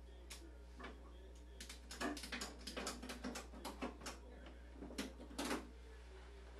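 A quick, irregular series of sharp clicks and knocks, like small hard objects being handled off to one side, loudest about two seconds in and again near the end, over a steady low hum.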